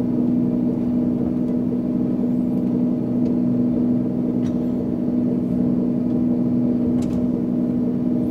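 A flight simulator's piston aircraft engine sound running steadily: a constant engine drone with an even hum and no change in power. A few faint clicks sound over it.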